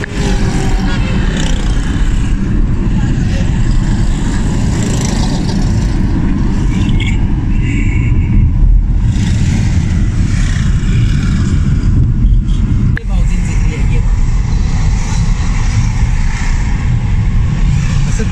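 Steady low rumble of a car's engine and tyres, heard from inside the moving car, with city traffic going by outside.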